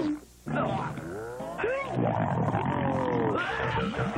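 Cartoon character vocal effects: a string of drawn-out cries whose pitch slides up and down, after a short dropout just at the start.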